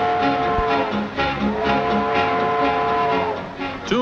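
Steam locomotive chime whistle blowing two long blasts, each a held chord of several notes. The first ends about a second in; the second sags slightly in pitch as it cuts off near the end. Orchestral film music plays underneath.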